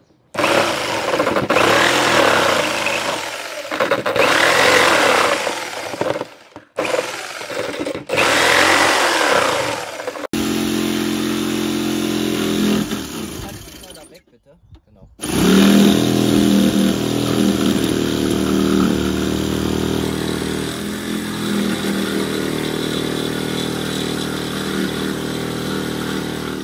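Electric jigsaw with an HSS metal-cutting blade sawing through the camper's roof panel to enlarge the skylight opening. It runs in several cuts with brief stops, the motor tone steadier in the later cuts.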